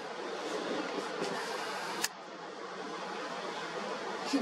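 Steady rushing noise of strong wind as a dust storm sweeps through, with a single sharp click about two seconds in.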